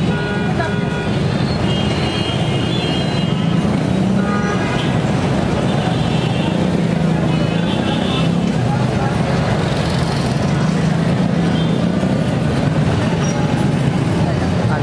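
Busy road traffic under an elevated metro line, a steady rumble with short horn toots breaking in several times.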